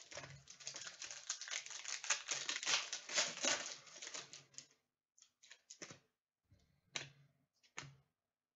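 Foil wrapper of a Panini Select 2016-17 soccer card pack being torn open and crinkled: a dense, rapid crackle for about four and a half seconds, then a few separate clicks and snaps as the cards are handled.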